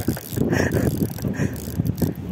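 Spinning reel being cranked to wind in a hooked fish, its gears giving a rapid rattling whirr.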